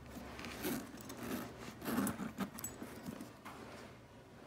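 A leather crossbody tote being handled: rustling and soft knocks of the leather with a few light metal clinks from the strap's clasp hardware, irregular and at a moderate level.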